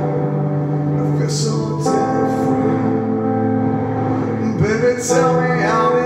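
Sustained synthesizer chords played on a ROLI Seaboard Rise 49 keyboard, changing chord about two seconds in, with a man singing over them, most clearly near the end.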